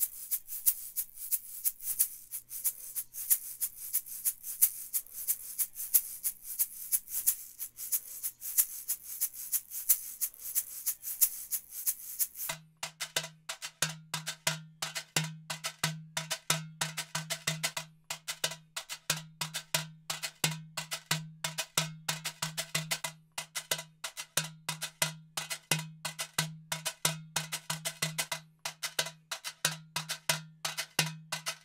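A shaker played in a steady rhythm, recorded close on a large-diaphragm condenser microphone; about twelve seconds in it gives way to a drum struck in a quick pattern, each hit ringing with a low tone.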